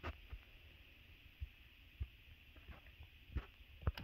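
Quiet background hiss with a few soft, low bumps of handling noise as the pipe is held close to the microphone.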